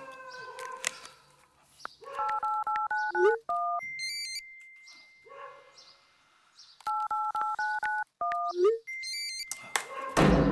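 Smartphone touch-tone keypad beeps: a quick run of two-tone dialing beeps ending in one long steady high beep, heard twice.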